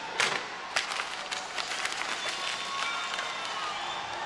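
Arena crowd noise: a steady din of cheering and clapping, with scattered sharp claps and a few shouts.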